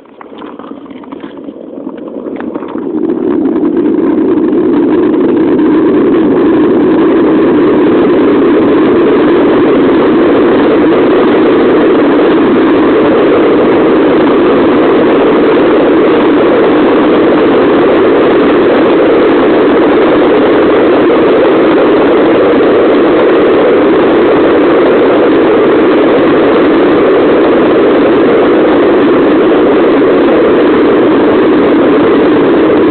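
Skateboard wheels rolling fast on rough asphalt downhill: a loud, steady rumble that grows over the first three or four seconds as the board picks up speed, then holds.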